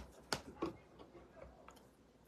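A few faint, short clicks: three clearer ones in the first second and smaller ones after, in a small quiet room.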